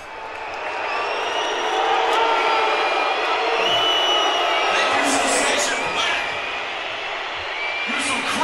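A crowd of many voices talking at once, swelling over the first couple of seconds, with a few sharp clicks about five to six seconds in.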